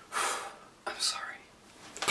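A man's breathy, whispered voice sounds without full voicing, two short ones about a second apart.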